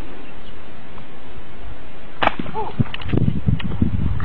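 A single handgun shot about halfway through, one sharp crack over steady wind noise on the microphone, followed by a short cry and a few smaller knocks.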